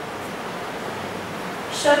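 Steady hiss of background noise in a pause between dictated phrases, with a woman's voice starting again near the end.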